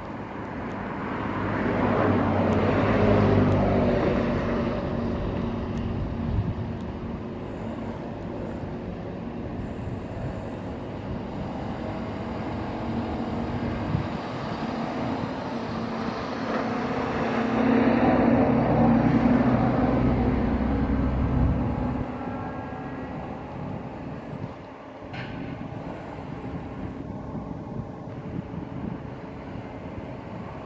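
Heavy diesel engine of a working crane running steadily, swelling louder twice: a few seconds in and again about two-thirds of the way through.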